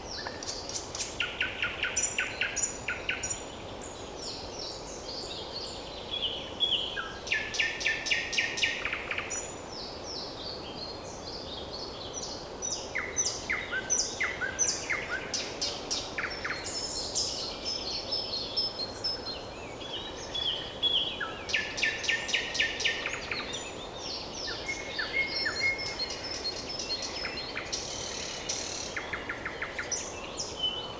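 Nightingale singing: loud phrases every few seconds, each a fast run of repeated notes and trills mixed with clear whistles.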